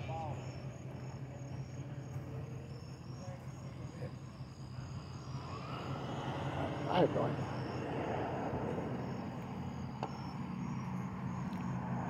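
Quiet outdoor night ambience: a steady low hum and faint distant traffic, with insects chirping in a regular high-pitched pulse throughout. A brief distant voice comes in about seven seconds in.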